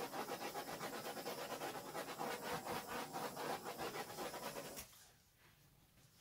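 Handheld butane torch flame hissing with a rapid flutter while it is played over wet acrylic pour paint to bring the cells up, then shut off abruptly nearly five seconds in.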